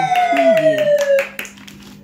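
Added sound-effect track: a long whistle-like tone gliding down in pitch over quick claps and clicks, with a short swooping 'wow'-like voice sample. The tone cuts off about a second and a half in and it goes much quieter.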